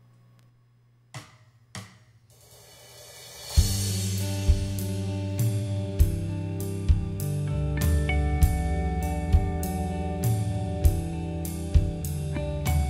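Two clicks, then a cymbal swell into a drum-kit backing groove that starts about three and a half seconds in with a steady beat. Over it, from about eight seconds in, a Telecaster-style electric guitar rings out sustained natural harmonics and intervals of thirds and sixths.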